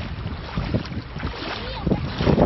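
Floodwater flowing and splashing through a flooded street, with wind buffeting the microphone.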